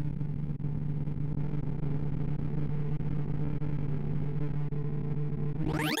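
Synthesized access tones from a sorting-algorithm visualizer: a dense, gritty low buzz with a steady low tone while the merge sort works through the smallest values, then a quick rising sweep of tones near the end as the array finishes sorting.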